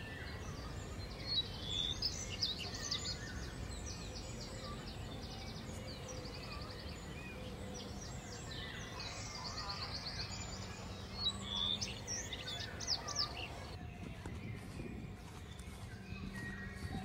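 Birds singing: quick trilled, chirping phrases in two bouts, the second about halfway through, over a steady low outdoor rumble. The birdsong drops away near the end.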